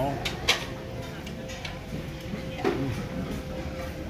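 Restaurant dining-room background with a faint steady hum, a sharp click about half a second in and a few softer knocks, then a man's appreciative "mm" as he tastes a bite of rice.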